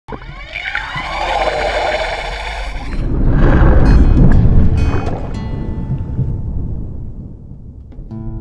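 Intro sound effects for a logo reveal: gliding, swirling tones for about three seconds, then a deep rumbling whoosh that swells to its loudest around four seconds in and slowly fades away.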